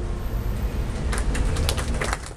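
Low rumble of wind buffeting the microphone. From about a second in, a quick, irregular scatter of sharp clacks.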